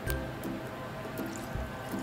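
Background music with a steady beat, over a faint trickle of 70% alcohol being poured from a plastic bottle into an empty plastic spray bottle.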